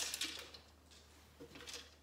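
Pine nuts poured from a measuring cup into a plastic food processor bowl: a brief rattling patter at the start that fades within about half a second, then only faint sounds.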